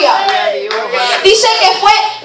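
A woman's voice over a handheld microphone, with hand clapping.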